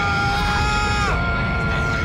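A high, held voice cry at one pitch, cut off about a second in, over a steady rumble and a constant high whine.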